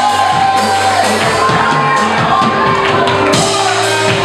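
Live worship music with a steady beat, a man singing and shouting into a microphone, and a congregation shouting and cheering along.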